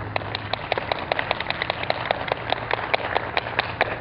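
A small audience applauding, the individual claps distinct and irregular, with a steady low hum underneath.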